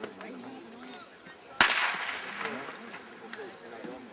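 A starter's pistol fired once, a single sharp crack about a second and a half in that rings out briefly, signalling the start of a sprint race.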